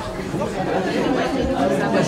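Indistinct chatter: several spectators' voices talking over one another.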